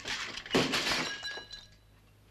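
Glass smashing about half a second in, with the pieces ringing and tinkling briefly before fading away.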